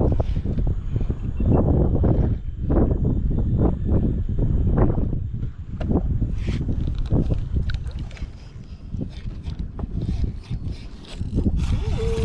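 Wind buffeting the microphone on an open boat, a loud uneven rumble, with water slapping against the drifting boat's hull in irregular surges.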